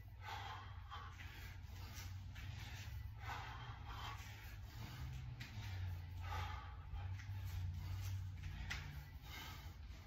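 A man's heavy, forceful breaths, roughly one every three seconds, as he works through continuous kettlebell half snatches. A steady low hum runs underneath.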